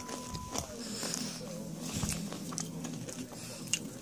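Someone chewing a toasted tortilla chip: faint, scattered crunches and clicks.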